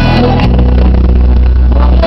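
Loud live folk-rock band music with bagpipes, drums and guitars, dominated by a heavy, overloaded bass that distorts the recording.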